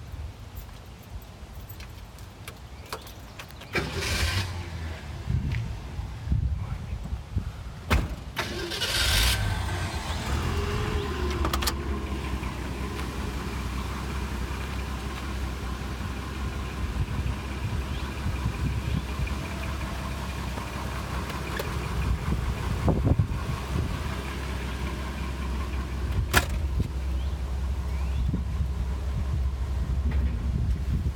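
A 1963 Ford Falcon's 144 cubic-inch straight-six is cranked and starts, catching about nine seconds in, then idles steadily. A couple of sharp knocks come later on.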